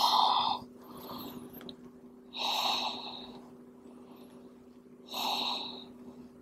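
A woman breathing hard, three heavy breaths about two and a half seconds apart, as she recovers her breath after a fast, intense mountain-climber exercise.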